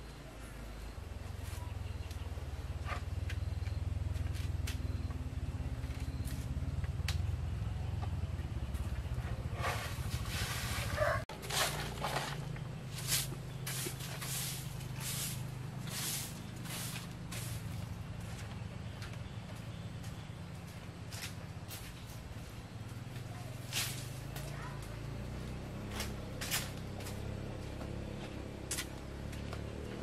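A broom sweeping a concrete floor, brushing in short scraping strokes at about one a second from partway in, over a steady low rumble.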